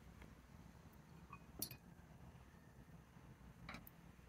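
Near silence with a few faint, light clinks and taps of small objects being handled on a desk, the sharpest about a second and a half in and a softer one near the end.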